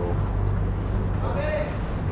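Steady low rumble of street traffic throughout, with a voice saying a short word at the start and another about one and a half seconds in.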